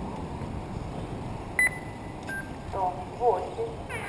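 Two short electronic beeps, the first higher and the second lower about two-thirds of a second later, then a brief voice over a loudspeaker, all over a steady background of outdoor noise.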